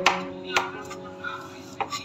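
Kitchen knife chopping romaine lettuce on a plastic cutting board. There are a few sharp knife strikes: one at the start, one about half a second in, and two close together near the end.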